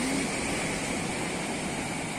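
Ocean surf breaking on the beach: a steady wash of wave noise with no distinct strokes.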